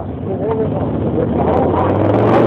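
Clothing rubbing against the camera's microphone, a muffled rustle that grows louder near the end, with voices faintly underneath.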